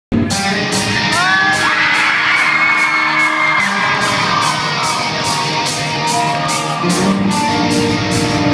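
Post-hardcore band playing live and loud in a large hall: electric guitars and drums, with an even beat of about two to three hits a second.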